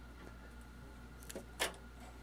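A few small clicks from a Tektronix oscilloscope's front-panel switches being worked by hand, the last and loudest about a second and a half in, over a faint steady hum. The switches have dirty contacts.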